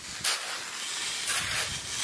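Digging in wet mudflat soil: a short scrape or strike of a hoe blade about a quarter second in, then hands scraping and scooping through the mud with a steady hiss that grows scratchier past the middle.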